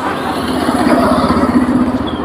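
A motor vehicle engine running close by, a steady hum with a fast, even low pulse.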